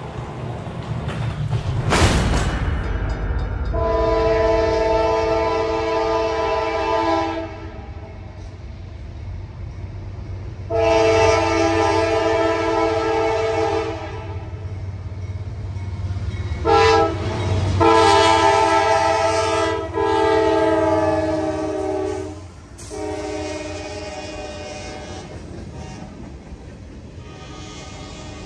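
CSX diesel freight train sounding its multi-chime air horn for a grade crossing: long, long, short, long, over the steady low rumble of the locomotives. After the horn the freight cars rumble past.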